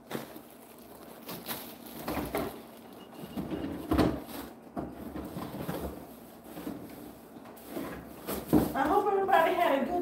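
Kitchen clatter: a few scattered knocks and clicks of items and cupboards being handled, mixed with a woman's voice talking away from the microphone. Her voice comes in clearer near the end.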